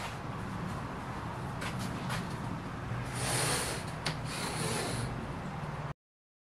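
Sheets of marine vinyl and thin plywood being slid and rubbed by hand on a worktable: a couple of light knocks, then two stretches of hissy rubbing, about three seconds in and again near five seconds, over a steady low hum. The sound cuts off suddenly just before the end.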